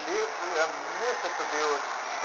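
A person speaking over steady background noise.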